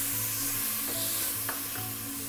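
Tomatoes and masala sizzling steadily in hot oil in an aluminium pressure cooker as they are stirred with a wooden spatula.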